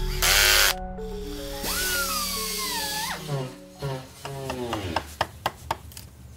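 A short loud burst of a cordless power drill, then a wavering electronic whine and a string of falling, glitchy electronic tones, ending in a few sharp clicks, like a robot shutting down, over soft background music.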